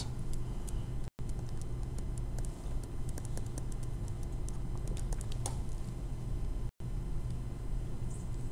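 Stylus tapping and ticking on a tablet screen while handwriting: a run of faint, irregular clicks over a steady low hum. The audio cuts out completely for an instant twice.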